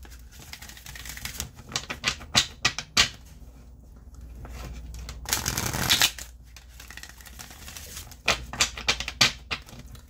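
A deck of tarot cards being shuffled by hand: runs of quick sharp clicks as the cards are snapped and tapped, with a longer rustling shuffle about five seconds in.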